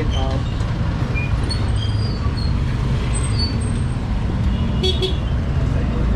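Steady low rumble of road traffic, with a few faint, short high-pitched chirps over it.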